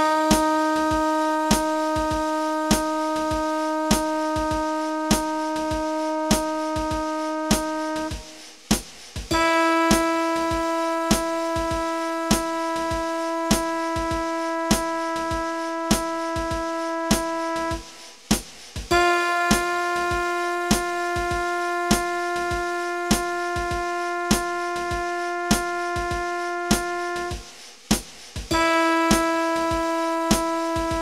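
Long-tone practice track: a single instrument tone held about eight seconds at a time, three times, with a short break between them and a fourth beginning near the end. A steady metronome click runs under it at about one and a half clicks a second.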